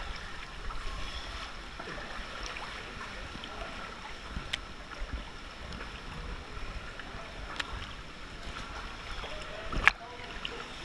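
Water lapping and splashing against a camera held at the surface by a swimmer, over a steady rush of water, with small drips and splashes throughout. A single sharp, louder hit comes just before the end.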